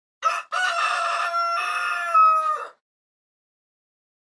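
A single rooster crow sound effect: a short first note, then a long held call that rises in loudness and falls in pitch at the end. It is clean, with no background noise.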